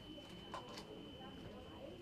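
Indistinct background talking of several people in a small room, with a faint steady high-pitched whine underneath and a short click about half a second in.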